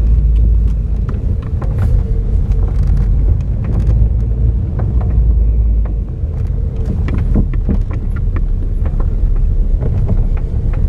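Car cabin noise while driving over a rough, broken asphalt road: a steady low rumble of engine and tyres with frequent small clicks and knocks. The low rumble eases a little about six seconds in.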